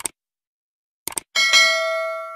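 Subscribe-button animation sound effect: a mouse click at the start, a quick double click about a second in, then a bright notification-bell ding that rings on and fades away.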